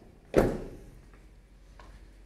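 2021 GMC Sierra 1500's rear cab door being shut: one solid thunk about half a second in, dying away quickly.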